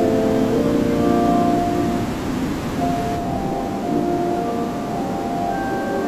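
Organ music playing slow, held chords, which thin out and grow softer after about two seconds.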